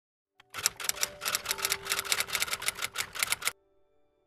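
Typewriter keys clacking in a fast run of about eight strokes a second, a typing sound effect that stops suddenly about three and a half seconds in.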